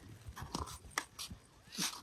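Faint, scattered crunches and scrapes of skis shifting on packed snow, a few short ones through the stretch.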